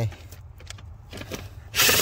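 Light rubbing and clicking as a cordless brushless power tool is fitted onto a bolt. Near the end the tool starts spinning with a loud steady whine, backing out a stubborn bolt.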